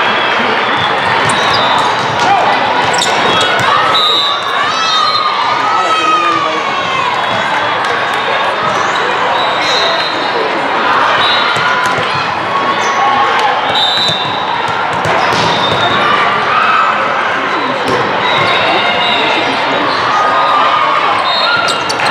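Busy indoor volleyball tournament hall: many voices and shouts echoing in a large room, with sharp ball contacts and several short, high referee whistles from the courts.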